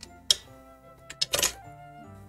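Light background music, with a sharp tap near the start and a short clatter of handling noise just past the middle as paper die-cut pieces are pressed down and lifted off a craft mat by hand.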